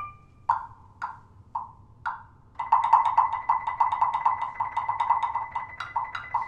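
Wood block struck in a slow, even pulse about twice a second, then played in fast repeated strokes from about two and a half seconds in, with a high steady tone sounding beneath the fast strokes.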